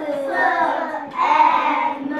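A class of young children's voices together in unison, chanting a greeting in drawn-out, sing-song phrases about a second long.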